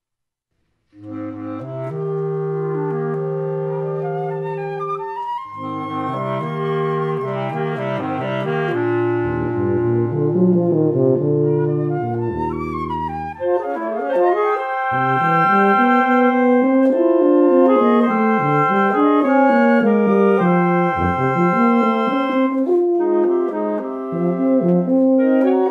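Mixed wind quintet of flute, clarinet, alto saxophone, bass clarinet and tuba begins playing about a second in. It opens with held chords over low bass notes, breaks off briefly near the middle, then goes on in busier, brighter passages.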